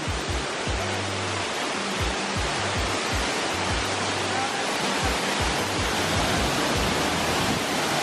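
Waterfall's steady rush of water falling over rocks. Underneath it runs background music with a steady low beat and bass notes.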